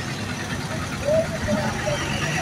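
Street background of a gathered crowd: a faint, distant voice talking about a second in, over a steady low hum of the roadside.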